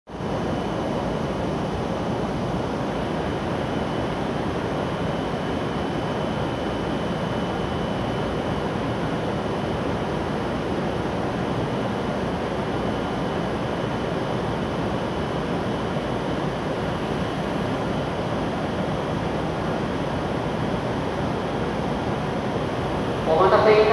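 Steady, even noise beside an E7 series Shinkansen train standing at the platform with its doors open, with a faint steady high whine running through it.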